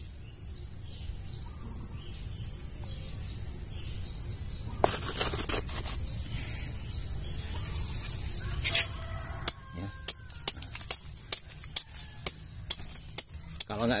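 Machete blade chopping into a mango tree trunk to cut away the bark, sharp knocks about twice a second in the last few seconds. A steady high hiss runs underneath throughout.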